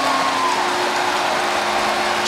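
Hockey arena crowd cheering a home-team goal, a loud steady roar with a low steady tone held beneath it.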